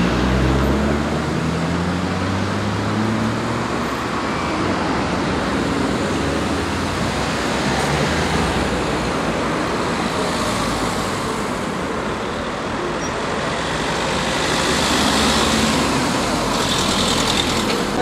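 Road traffic at a roundabout: a steady wash of tyre and engine noise, with a vehicle's engine rising in pitch over the first few seconds and further vehicles swelling past about ten and fifteen seconds in.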